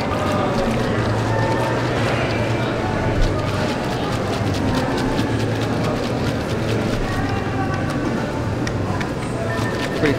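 Food-court ambience: a murmur of distant voices over a steady low hum, with frequent small clicks and clatter throughout.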